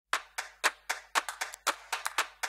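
A rhythmic handclap pattern, about four sharp claps a second with a few extra hits in between, playing alone at the very start of a pop song.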